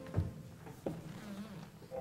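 A pause in the orchestral music: a low thump just after the start and a sharper knock a little before the middle, with a faint low tone under them. These are stage noises on a live opera stage.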